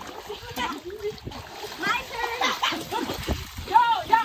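Water splashing in a swimming pool, with children's and adults' voices calling out over it.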